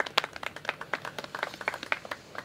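A quick, irregular run of sharp clicks or taps, several each second.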